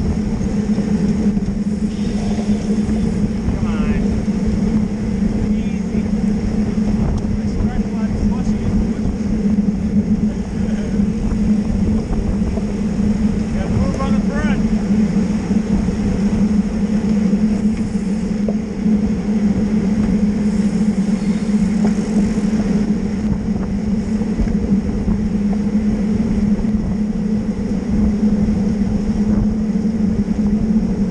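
Steady wind and road rush on the microphone of a camera riding in a pack of road-racing bicycles, a constant loud noise with a low hum.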